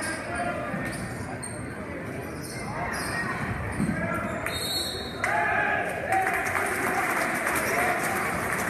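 Basketball game in a gymnasium: a ball dribbled on the hardwood court with sneakers squeaking and a steady hubbub of crowd and player voices in the hall. There is a brief high squeal about halfway through, and the crowd gets louder just after it.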